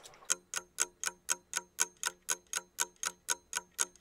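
Clock-ticking sound effect: a steady run of sharp, evenly spaced ticks, about four a second.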